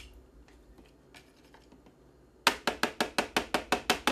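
Hand-turned spice mill grinding: a rapid, even run of sharp ratcheting clicks, about seven or eight a second, starting a little past halfway after a quiet stretch with a few faint knocks.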